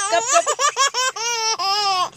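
Baby laughing hard: a run of short, quick bursts of laughter, then one longer drawn-out laugh near the end.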